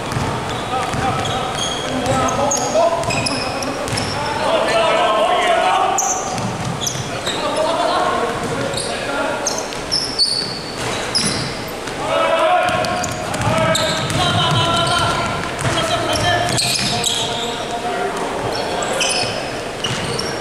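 Indoor basketball game on a hardwood court: the ball bouncing, sneakers squeaking, and players calling out, all echoing in a large sports hall.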